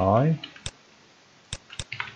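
A man's voice trails off at the start, then computer mouse button clicks: one sharp click, then three quick clicks close together near the end.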